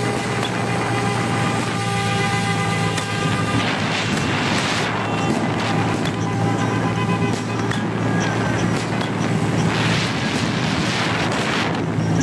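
Motor vehicle running at road speed: a steady engine drone under heavy wind noise on the microphone.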